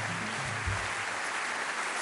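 Audience applauding: a steady, even wash of clapping.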